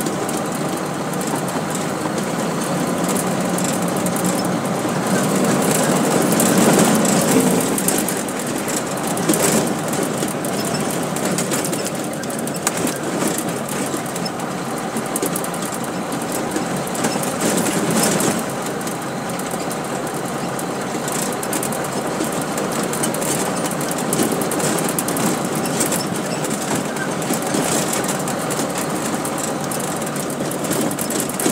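Heavy truck's engine running with rattling and road noise, heard from inside the cab; the noise swells briefly a few times.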